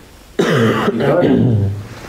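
A man clearing his throat once, loudly: a sudden rasp about half a second in, followed by a voiced rumble lasting about a second.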